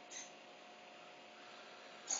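Near silence with a faint steady hum, and one brief, faint, high whir about a quarter second in from the R2-D2 replica's holoprojector servos moving at random.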